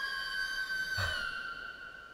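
Background film score: a single high, sustained flute-like note held steadily, stepping a little lower in pitch about a second in and fading toward the end.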